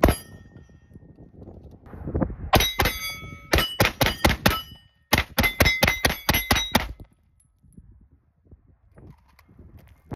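Glock 19X 9mm pistol shots: one shot, then two quick strings of about seven and eight shots, roughly three to four a second, each shot followed by a ringing metallic clang.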